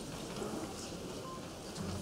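Quiet room tone in a hall between speakers: a faint steady background hiss and low hum, with a brief faint tone about a second and a half in.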